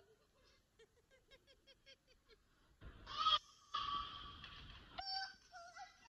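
Young children squealing and shrieking in loud, high-pitched bursts from about halfway through. Before that comes a faint, quick run of short vocal sounds, about seven a second.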